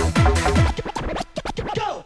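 Electronic dance track with a pounding kick drum that drops out under a second in, giving way to turntable scratching whose pitch sweeps rapidly up and down, ending in a brief cut to near silence.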